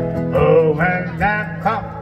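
A man singing with a strummed acoustic guitar accompanying him; his sung line comes in about half a second in, over the guitar's steady chords.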